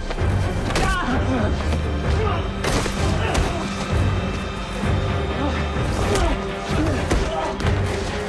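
Action-scene soundtrack: dramatic background music under fight sound effects, with thuds of blows and falling bodies, the heaviest about two and a half seconds in, and wordless voices straining.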